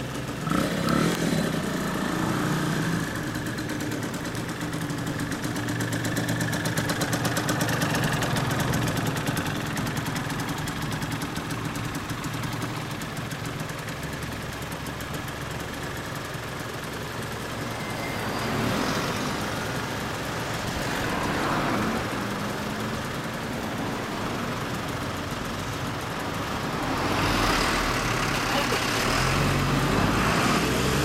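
Suzuki RG125Γ's single-cylinder two-stroke engine, breathing through a Sugaya racing expansion chamber, running at low revs as the bike moves off and rides slowly. The revs rise and fall several times, most strongly near the start and towards the end.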